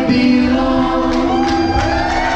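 Live reggae rock band playing, with several voices singing a long held note over the band.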